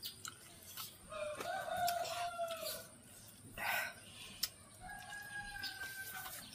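A rooster crowing twice in the background: one long call about a second in and another starting near the end. Between the crows there are short clicks and a brief louder noisy burst midway, with people eating by hand close to the microphone.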